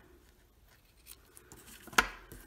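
A few faint snips of scissors trimming a ribbon, then a sharp clack near the end as the scissors are set down on the table.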